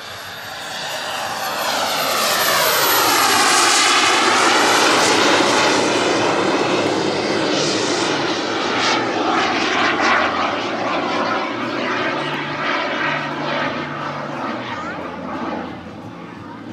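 Turbine engine of a large-scale radio-controlled Hawker Hunter model jet flying past: a high whistling whine over a rushing jet noise. It swells over the first few seconds, is loudest around four seconds in, then slowly fades as the model flies away.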